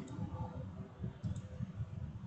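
Faint clicks, a pair of them a little over a second in, over a low, uneven rumble of microphone background noise.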